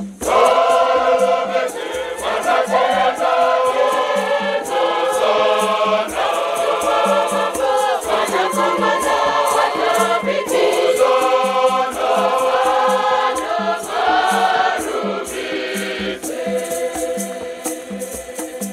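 Large mixed choir singing a Shona Catholic hymn, many voices together in phrases, coming in at full strength right at the start. Gourd rattles (hosho) keep a steady shaken beat under the voices.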